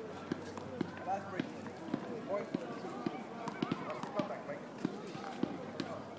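Footsteps of players walking on a paved outdoor court, a string of light knocks a fraction of a second apart, with faint voices in the background.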